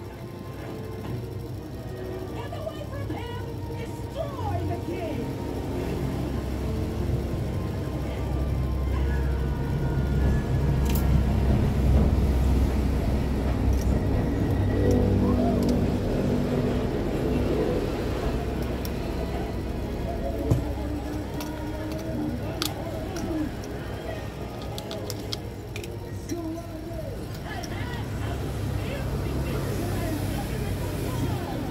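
Low rumble of passing road traffic, swelling to a peak partway through and easing off, under faint background voices and music. A few sharp clicks of small phone parts are handled on the bench.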